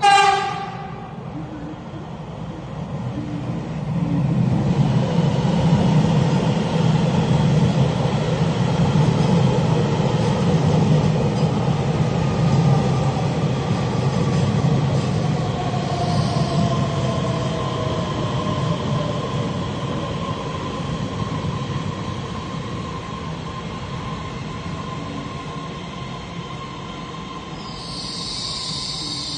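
Taiwan Railways EMU3000 electric multiple unit sounding a short horn blast as it approaches, then rumbling into an underground station platform, loudest about five seconds in. A falling whine follows as the train slows, and the rumble fades gradually near the end.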